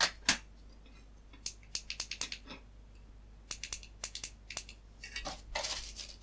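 White plastic housing parts of a plug-in ultrasonic pest repeller clicking and clattering as they are handled and set down on a wooden bench: two sharp clicks right at the start, then runs of quick small clicks. Near the end, a rustle as the cardboard product box is picked up.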